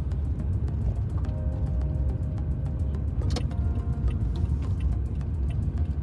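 Steady low rumble of a car's engine and tyres heard from inside the cabin as it drives and turns. Faint background music notes sit over it in the middle, and there is one sharp click a little past three seconds in.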